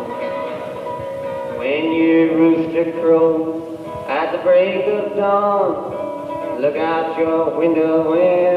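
Harmonica over acoustic guitar, played live in held, bending phrases a second or two long. The sound is rough and boxy, as on an audience tape recording.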